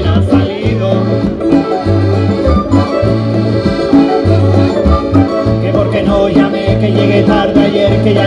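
Canarian folk ensemble playing live: accordion to the fore over strummed guitars and small lutes, with a walking bass line and conga drums.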